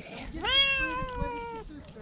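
Young tabby cat giving one long, drawn-out meow that rises briefly and then slowly falls in pitch, starting about half a second in.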